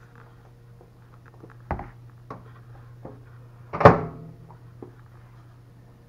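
A microwave door and a glass bowl being handled: a few light clicks and knocks, then one loud clunk with a short ring a little under four seconds in, over a low steady hum.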